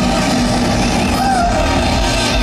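Live rock band playing loud, with distorted electric guitars, bass and drums in a dense, unbroken wall of sound.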